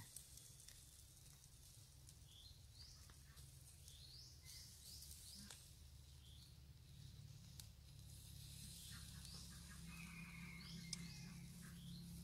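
Near silence: faint, short high chirps from birds repeating every second or so, over a low steady hum.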